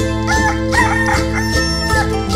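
A rooster crows over Andean instrumental music. The crow is a short note, then a wavering one, ending in a long held note, above a steady strummed string accompaniment.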